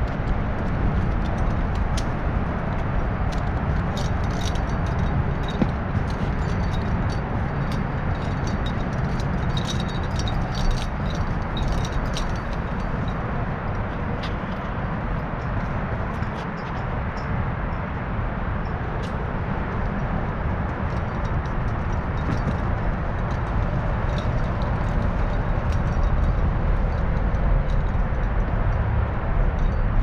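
Metal climbing hardware on an arborist's harness and rope clinking and jingling on and off as he works the rope and climbs, busiest in the first half, over a steady low outdoor rumble.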